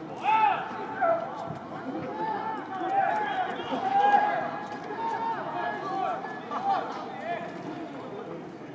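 Several voices shouting short calls across an outdoor football pitch, overlapping one another, with the loudest calls about a second in and around four seconds in.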